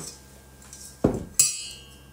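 Stainless steel saucepan set down with a dull thump about a second in, followed by a sharp metallic clink with a short ring as metal meets the pot.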